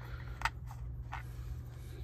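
Tweezers turning the hub of a cassette tape to wind the tape back up, giving three faint plastic clicks within about the first second.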